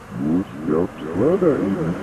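A voice whose pitch sweeps up and down starts just after the beginning, over a low steady background rumble. No clear words come through.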